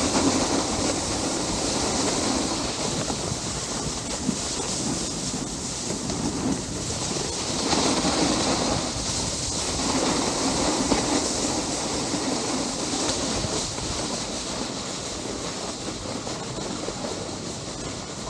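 Snowboard sliding over groomed snow: a continuous scraping hiss from the board's base and edges on the packed surface, rising and falling in waves with the turns and easing off a little toward the end as the board slows.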